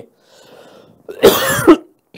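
A man coughs once, about a second in: a short, harsh burst with a faint breath drawn just before it.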